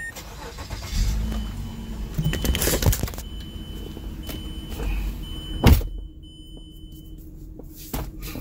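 Handling noise inside a parked car: rustling and clicks as the phone is moved, with one sharp knock a little before six seconds in. A faint high tone sounds on and off, and it goes quieter near the end.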